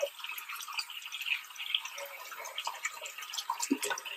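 Bathroom faucet running a steady thin stream into the sink basin, with the irregular scratchy strokes of a toothbrush scrubbing teeth over it.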